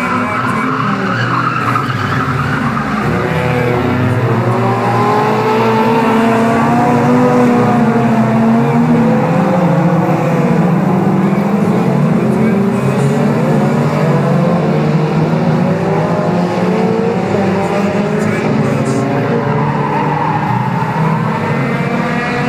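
A pack of 1600cc autocross cars racing on a dirt track, several engines revving up and down at once as they slide through a corner. The engines are loudest around the middle as the pack passes close by.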